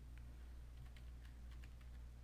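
Faint keystrokes on a computer keyboard, a short run of irregular clicks as a word is typed, over a steady low hum.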